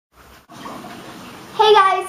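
About a second of steady, quiet hiss, then a young girl's voice starts speaking loudly near the end.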